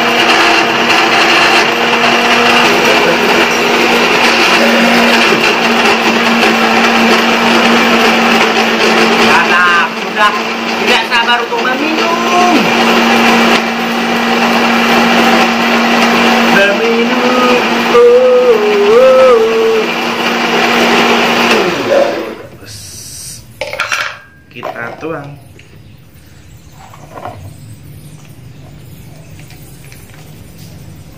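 Electric countertop blender running steadily at full speed, blending guava juice. About 22 seconds in it is switched off and the motor winds down, followed by a few knocks.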